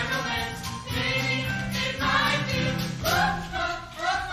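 A cast of singers singing together in an ensemble stage number, accompanied by a live pit band.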